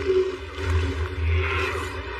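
Film soundtrack: a low sustained drone from the score under a man's snarling growl as he turns on his victim.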